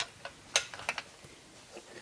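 A few light metal clicks as a chrome stop-bar guitar tailpiece is handled and tried onto its mounting posts, the sharpest about half a second in. The posts were drilled in the wrong spot, so the tailpiece does not fit.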